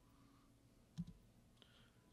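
Near-silent room tone broken by a single short click about a second in: a key pressed on the lectern laptop to advance the slide, picked up by the lectern microphone.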